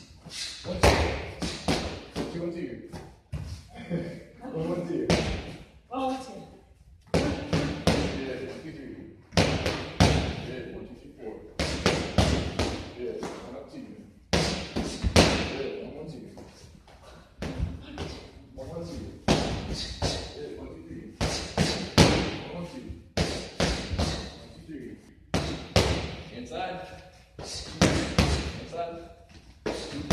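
Punches and kicks striking focus mitts: sharp smacks coming in quick bursts of several strikes at a time, with short pauses between combinations.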